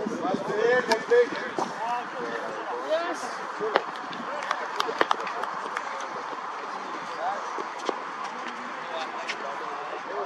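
Indistinct voices of several people talking, with a few sharp knocks of a cricket ball being played in the nets, the clearest about four and five seconds in.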